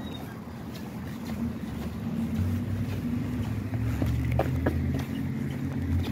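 Steady low rumble of vehicle traffic outdoors, growing a little louder after about two seconds, with a few faint clicks.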